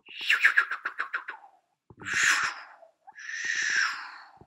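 A person's mouth sound effects: a rapid fluttering trill, then two breathy whooshes, as playful sound effects for moving animation.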